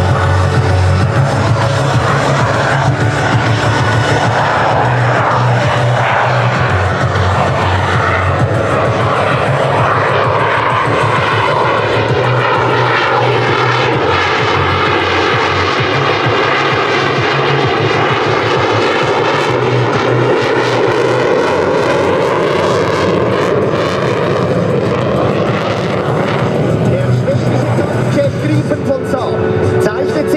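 JAS 39C Gripen jet fighter's single afterburning turbofan (Volvo RM12) running at display power. A continuous loud jet roar with a sweeping, phasing whoosh as the aircraft passes closest about halfway through, then moves away.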